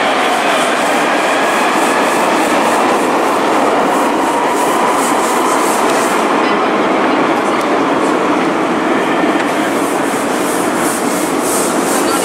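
Tram running through the underground station: a loud, steady running noise that holds evenly throughout.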